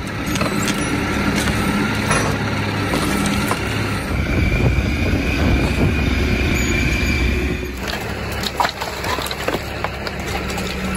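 Telehandler's diesel engine running steadily as it works, with scattered knocks and clatter. A steady whine joins in about four seconds in and drops out near the eight-second mark.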